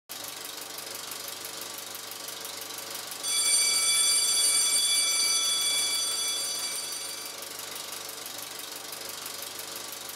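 Film projector running with a rapid, even clicking. A high ringing tone comes in suddenly about a third of the way through and fades away over about four seconds.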